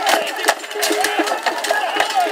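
Close-quarters melee: wooden pole weapons knocking and clashing against each other, against the wooden wagon side and against steel helmets and armour in rapid, irregular strikes, over many men shouting.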